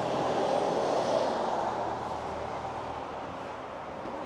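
A vehicle passing on the road: a rush of tyre and engine noise that swells in the first second and then slowly fades.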